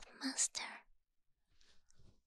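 Breathy whispering and wet mouth sounds made right at the ear of a binaural microphone: a short burst in the first half-second or so ending in a sharp click, then faint soft sounds near the end.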